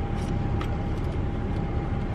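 A car idling, heard from inside the cabin as a steady low rumble, with a faint steady hum running over it.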